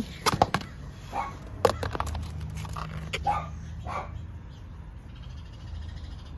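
Clear plastic clamshell lid of a seed-starting container being lifted and handled, giving sharp plastic clicks and crackles, loudest in the first two seconds, with a few short faint calls in between.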